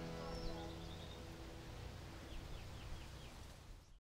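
Faint outdoor ambience with bird calls: one short high call about half a second in, then a quick run of about five short falling chirps a little past halfway, while the tail of the closing music dies away in the first second.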